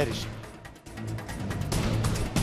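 Dramatic background music of a TV drama score, falling quiet a little under a second in and then swelling again.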